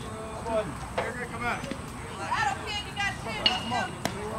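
Distant voices of players and onlookers calling out and chattering around a baseball field, with a couple of short sharp knocks, the louder one near the end.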